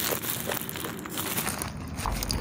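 Paper wrapper of a McDonald's chicken sandwich crinkling as it is handled, an irregular run of small crackles.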